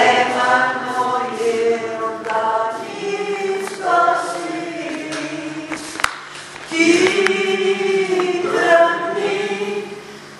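A group of voices singing a Bulgarian Christmas hymn together, line by line, with short breaks between phrases.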